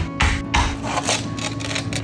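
A wooden spoon knocking repeatedly on a slab of sticky homemade honeycomb toffee on a foil-lined wooden board, about four dull knocks a second that stop about a second in; the slab does not shatter. Background music plays throughout.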